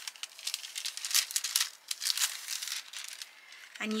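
Gold toner foil and its thin plastic transfer sleeve crinkling as they are peeled back off the foiled cardstock, in a run of irregular crackles that thin out about two seconds in.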